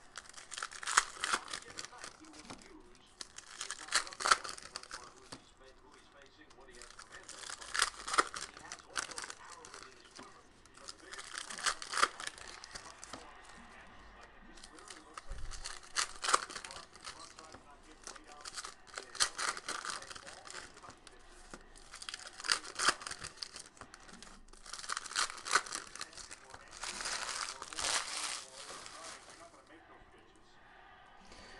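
Shiny foil wrappers of trading-card packs being torn open and crinkled by hand, in about eight bursts every three to four seconds as pack after pack is opened.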